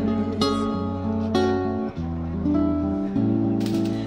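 Amplified frame-bodied silent guitar playing an instrumental passage of picked notes and changing chords, with no singing.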